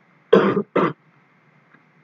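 A person coughing twice in quick succession, two short coughs in the first second, the first slightly longer.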